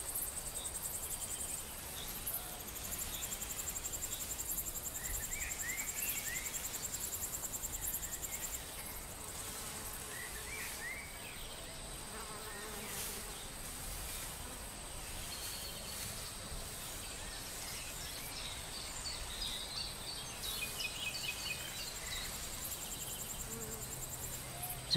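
Crickets trilling: a faint, high, rapidly pulsing trill that stops about eight seconds in, with a few faint short chirps later on.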